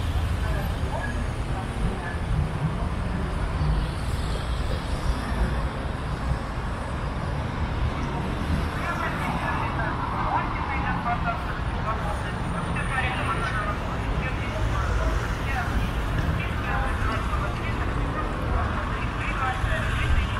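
City street ambience: a steady low traffic rumble with people talking, the voices becoming busier about halfway through.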